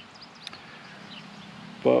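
Faint bird chirps: a few short, high calls in the first half-second over a quiet outdoor background.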